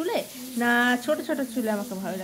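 A woman's voice, talking or singing in a melodic line, with one note held steady for about half a second partway through.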